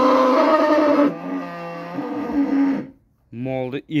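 A cow mooing in one long, low call that drops in pitch about a second in and stops near the three-second mark.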